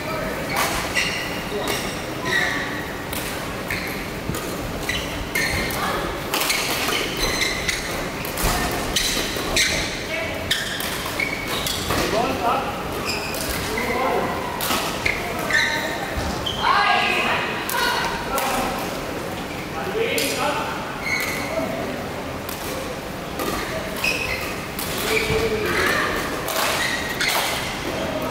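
Badminton rackets striking a shuttlecock, sharp repeated hits during rallies, echoing in a large hall, with indistinct voices in the background.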